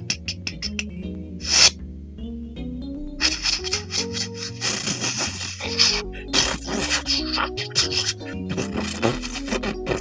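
Cartoon orchestral score playing, with a quick run of scratchy scraping noises from about three seconds in: a cartoon digging sound effect of dirt being dug out fast.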